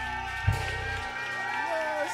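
A live band's held chord on keyboard and bass ringing out, with one sharp thump about half a second in; the bass cuts off about a second in while the keyboard chord sustains, and voices come up over it.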